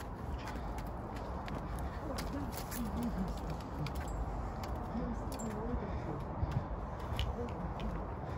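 Footsteps crunching on dry leaves and twigs, with quiet, indistinct talking under a low rumble of handling and wind on the microphone.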